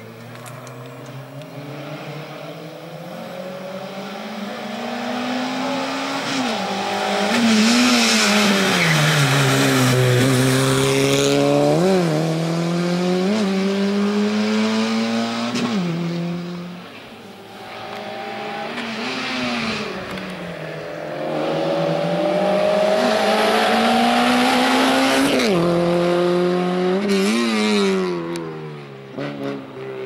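Small hatchback race car's engine revving hard through a cone slalom, its pitch climbing and then dropping sharply again and again as the throttle is lifted and reapplied between the cones. It fades briefly about halfway through, then comes back loud.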